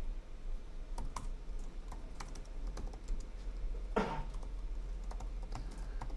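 Typing on a computer keyboard: irregular, quick key clicks as code is entered. A short breathy noise about four seconds in is the loudest moment.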